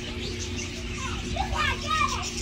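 Young children's voices: short high-pitched exclamations in the second half, over a steady background hum.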